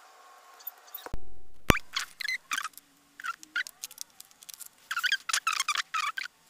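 A knock and a sharp click about a second in, then short, scratchy rustles of fabric-covered paper hexagons being handled during hand sewing.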